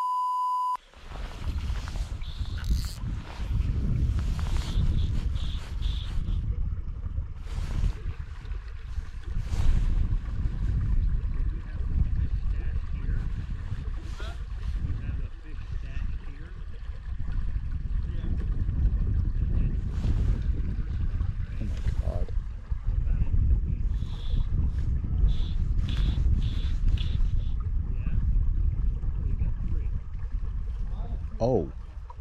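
A steady high test-card beep cuts off about a second in. After it comes the low, fluctuating rumble of wind buffeting an action-camera microphone, with scattered clicks and rustles from the fly rod and line being handled.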